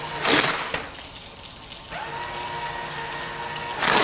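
Water running from a sink tap. A paper towel dispenser feeds out a towel with a steady motor hum that starts about two seconds in and stops near the end, followed by the rustle of the paper towel being pulled free.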